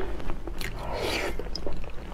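A person chewing a mouthful of food, with wet mouth sounds and small clicks.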